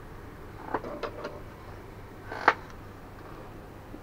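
A few light clicks and taps from a resin coaster being picked up and handled on a workbench, the sharpest about two and a half seconds in, over low room noise.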